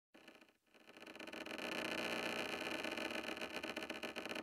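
Faint, steady, hissy electronic texture with held tones and a fine crackle, coming in about a second in: the quiet opening layer of an indie-pop track.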